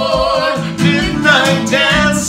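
Live acoustic performance: voices singing a sung line over a strummed acoustic guitar and an electric bass.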